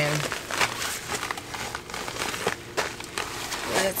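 Plastic bubble mailer crinkling and rustling in irregular bursts as it is handled and opened.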